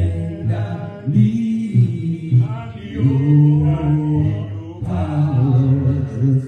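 A man's voice singing unaccompanied into a microphone, in slow phrases with long held notes.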